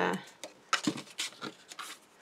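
Hands handling cardstock on a cutting mat: a few short taps and scrapes of card, with a brief rub of paper near the end.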